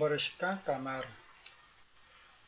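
A voice speaking in the first second, then two faint clicks of a computer mouse close together.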